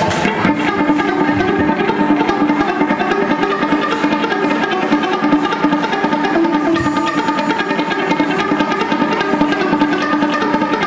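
Small live rock band playing the instrumental opening of a song: electric guitars and bass guitar holding sustained notes over a fast, even rhythm, with drums, and no singing.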